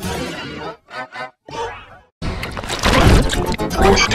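Heavily effects-distorted jingle audio. It breaks into short choppy fragments separated by dropouts, goes silent briefly, then about two seconds in bursts back as loud, dense, noisy music.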